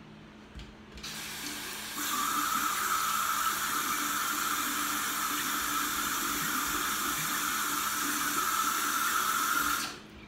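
Bathroom sink tap running: the water comes on about a second in, is opened fuller a second later, runs steadily into the basin, and is shut off abruptly just before the end.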